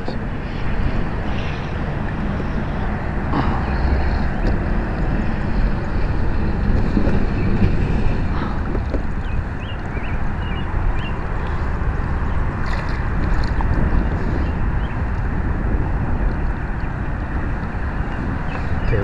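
Steady wind rushing over the camera microphone, with a few faint small knocks scattered through it.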